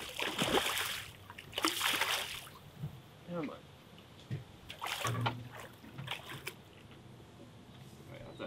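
A hooked fish thrashing and splashing at the surface beside a boat, in several bursts, the strongest in the first two seconds and again around five to six seconds in, as it is brought boatside to be landed.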